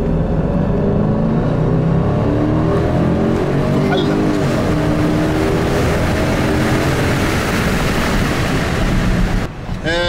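Range Rover Sport's 510-horsepower supercharged V8 accelerating, heard from inside the cabin. The engine note climbs and drops back as the automatic gearbox shifts up, then eases off near the end.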